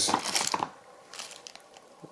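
Small clear plastic hardware bags being handled and crinkled, strongest in the first half-second, with a few faint rustles about a second in.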